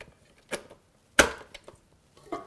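Two knocks of juicer parts being set in place: a light one about half a second in, then a sharper, louder one just after a second that dies away briefly.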